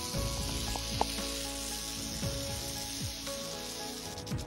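A rattlesnake's tail rattle buzzing steadily in warning, a dense hiss over faint background music.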